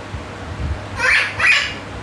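A man's voice making two short high-pitched non-word sounds, about a second and a second and a half in.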